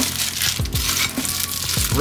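Plastic packaging bags crinkling as the bagged metal rack-mounting brackets are picked up and handled, over background music with a steady beat.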